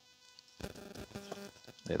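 A single light metallic click as titanium pot stand pieces are handled, followed by about a second of faint low buzzing.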